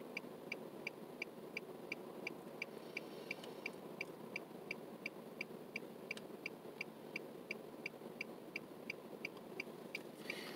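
A car's warning chime beeping steadily, short high-pitched beeps about three a second, over a low steady hum inside the car.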